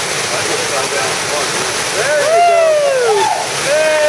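Steady rush of a waterfall pouring into a rock pool, with voices calling out over it; one long call falls in pitch about two seconds in.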